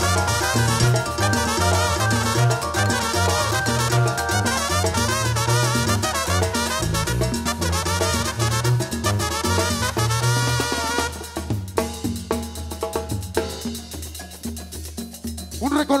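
Live Guerrero-style brass band playing: trumpets and trombones carry the melody over sousaphone, bass guitar and a steady drum beat. About eleven seconds in the horns drop out and it thins to mostly drums and percussion.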